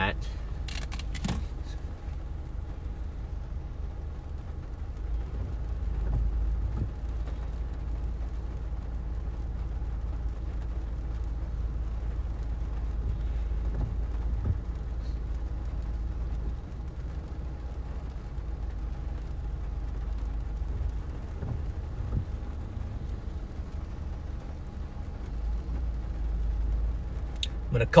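Low, steady rumble inside a stopped vehicle, swelling for several seconds at a time, with windshield wipers sweeping the glass now and then.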